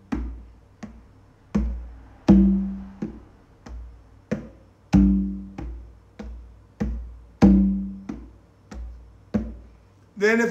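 Conga drum struck by hand in a slow repeating four-stroke training pattern: a ringing open tone, then softer touch, palm and finger strokes. About one stroke every two-thirds of a second, with the loud open tone coming round every two and a half seconds.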